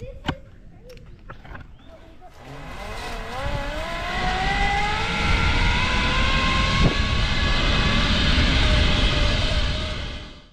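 Zipline trolley running along the steel cable, its whine rising steadily in pitch as the rider picks up speed, under rushing wind on the helmet camera's microphone. A few clicks come first, and the ride noise builds from about two seconds in.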